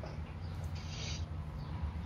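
Quiet background rumble, with one short breathy hiss about a second in.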